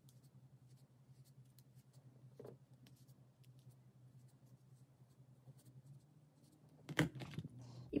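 Faint handling sounds of hollowfiber stuffing being pushed into a small crocheted piece with metal tweezers: soft rustling and small clicks over a low steady hum. A louder short click comes about seven seconds in.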